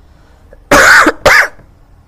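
A person coughing twice in quick succession, loud and close to the microphone, about three-quarters of a second in.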